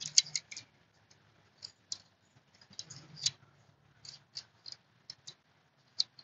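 Irregular metal clicks from a Gerber Diesel multi-tool as its locking inside tools are opened, handled and folded shut, with a dozen or so sharp ticks of differing loudness.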